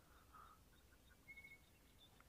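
Near silence in the open bush, broken by a few faint, short high chirps, like a distant bird calling.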